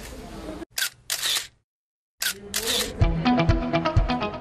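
Camera shutters clicking in short bursts as a group photo is taken, over a room's background murmur. Music with a steady beat starts about three seconds in.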